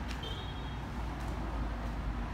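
Street traffic noise: a steady low rumble of road vehicles, with a short high-pitched tone shortly after the start.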